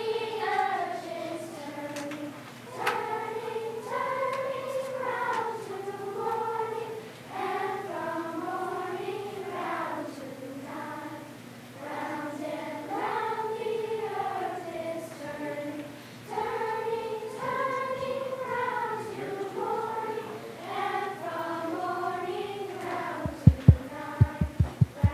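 Children's chorus singing unaccompanied, in phrases with short breaths between them. Just before the end, a run of loud, evenly spaced low thumps begins, about three a second.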